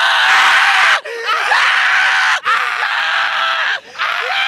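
A person screaming in three long, loud, high-pitched cries, each about a second long, with brief breaks between them.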